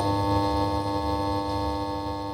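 A held synthesizer chord: steady sustained tones, slowly fading, as a short music sting under a welcome-back title card.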